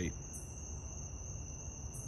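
Night insects, crickets, trilling steadily at a high pitch, with a higher pulse of sound coming back about every second and a half.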